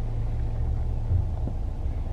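A car engine running with a steady low rumble at crawling speed off-road. There is a brief low bump about halfway through.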